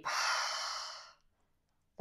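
A woman's single audible breath, a breathy rush about a second long that fades away.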